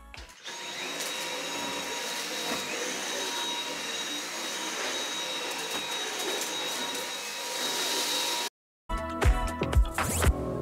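Cordless Dyson stick vacuum running steadily over carpet: a rushing of air with a high, steady motor whine. It cuts off abruptly near the end, and music with a strong beat comes in.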